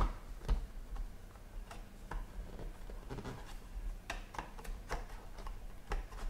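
Faint, scattered light ticks and rubs of fingers handling a hard clear plastic card case, with one sharper click at the very start.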